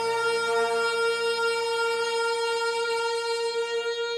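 Saxophone ensemble holding one long sustained note.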